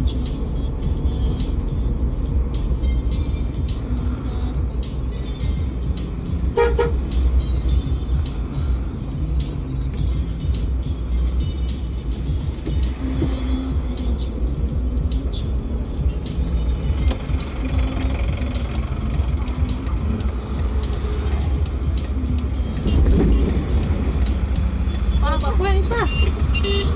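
Car cabin road and engine noise from driving at low speed, a steady deep rumble, with one short car horn toot about a quarter of the way through.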